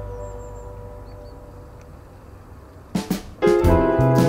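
Background music: a held chord fades away over the first three seconds, then a new piece starts with a couple of drum strokes and carries on loudly.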